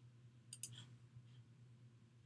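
Near silence: room tone with a faint steady hum, and a couple of faint clicks about half a second in.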